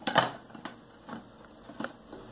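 Aluminium cake pan knocking against a serving plate as it is turned over to unmould a cake: one sharp knock just after the start, then a few lighter clicks of metal on plate.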